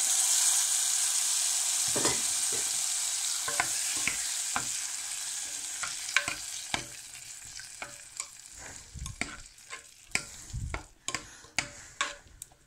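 A ghee tempering of mustard seeds, curry leaves and red chillies sizzling as it meets cooked dal in an aluminium pressure cooker, the sizzle dying away over several seconds. A spoon stirring the tempering in knocks and clinks against the pot, the knocks growing more distinct toward the end as the sizzle fades.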